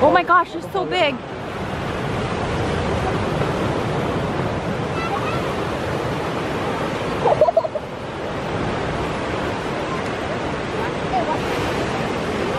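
Ocean surf breaking and washing up the beach, a steady wash throughout. Brief, high, warbling excited voices in the first second and again about seven seconds in.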